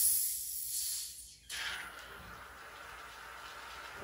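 Gas hissing out of a shaken bottle of pét-nat sparkling wine as its crown cap is pried up. The hiss breaks off about a second and a half in, then starts again and slowly fades.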